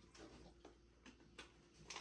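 Near silence with a few faint, sharp clicks and ticks from handling a plastic water bottle over a jar of mush.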